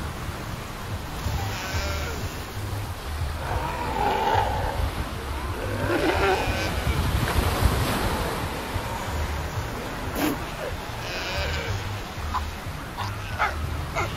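Galápagos sea lions calling at intervals over steady surf, with a run of short, sharp calls near the end.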